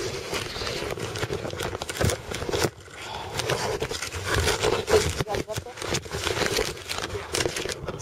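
Irregular rustling, scraping and knocking of a camcorder being handled with its lens covered, mixed with muffled, indistinct voices.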